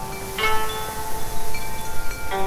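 Slow koto music: single plucked notes with a chime-like ring. One note is still sounding as another is plucked about half a second in and rings on.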